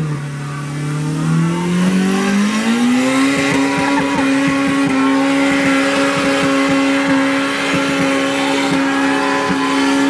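A car engine at high revs during a burnout: its note climbs over the first three seconds and then holds steady near the limiter as the tyres spin and smoke on the wet pavement.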